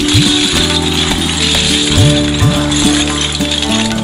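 Background instrumental music with a rattling element, steady held notes and repeated low notes that slide upward in pitch.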